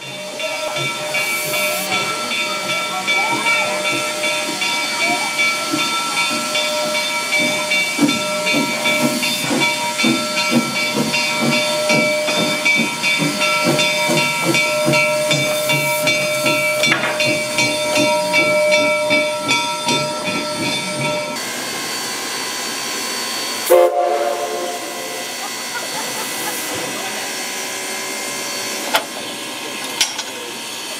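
Steam locomotive at close range: a steady hiss of escaping steam carrying several sustained high tones, with a rhythmic low pulsing through the middle. About two-thirds of the way through the tones stop abruptly and the sound drops to a quieter steady hiss, broken a couple of seconds later by one short loud burst.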